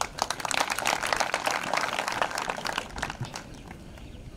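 Crowd applauding, a dense patter of many hands clapping that dies away about a second before the end.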